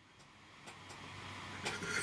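A pause with near silence at first, then faint noise and small mouth clicks building into the start of a man's laugh near the end.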